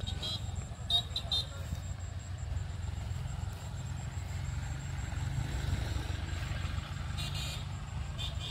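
Massey Ferguson diesel tractor running steadily in a neighbouring field, a continuous low engine rumble, with a few short high chirps near the start and again about seven seconds in.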